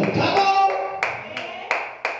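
Hand clapping in a steady beat, about three claps a second, starting about a second in as a held voice fades out.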